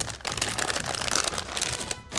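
Plastic wrapping crinkling as it is handled and pulled out of a cardboard box: a dense, continuous run of small crackles.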